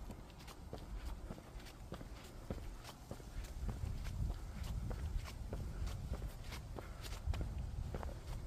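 Footsteps of a hiker walking a trail: a steady run of sharp steps, about two to three a second, over a low rumble that grows louder in the middle.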